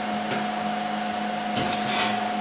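Steady fan-like machine hum, a low drone with a higher whine held over it. Near the end comes a brief scrape and clink of metal as the stainless exhaust tubes are handled and fitted together.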